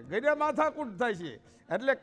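A man speaking in Gujarati, telling a story in a lively storytelling voice, with a brief pause about one and a half seconds in.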